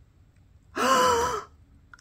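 A woman's single high, voiced gasp of delighted surprise, lasting under a second and falling a little in pitch at the end, as the finished piece turns out well.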